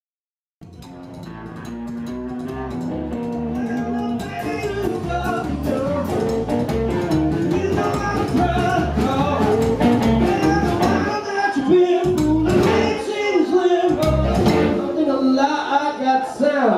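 Live rockabilly band playing: upright double bass, hollow-body electric guitar and drums with a man singing, fading in just after the start. Near the end the low beat breaks off a few times in short stops.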